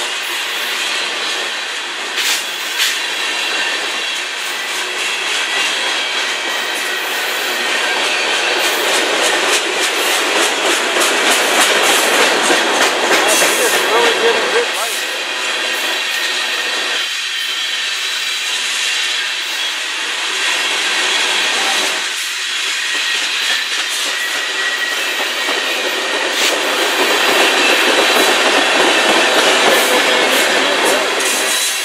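Freight cars of a long mixed manifest train rolling past close by: steady noise of steel wheels on rail with repeated clicks as the wheels cross rail joints, a little louder in the middle and near the end.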